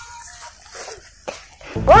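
A loud, short cry rising in pitch, near the end after a mostly quiet stretch.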